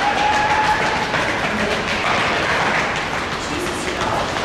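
Busy weight-room din: many quick footfalls of athletes' shoes on a rubber gym floor during a stepping drill, mixed with several people talking at once.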